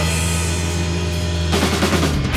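Rock band playing live: electric bass, electric guitar and drum kit. A low note is held for about a second and a half, then the drums and guitars strike in together near the end.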